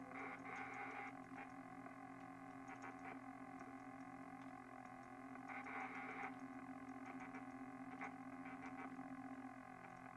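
Quiet instrumental passage of lo-fi experimental music: a steady drone of many held tones, swelling brighter about a second in and again around six seconds, with scattered faint clicks.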